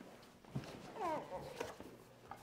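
A short, falling voiced moan or sigh, preceded by a soft thump.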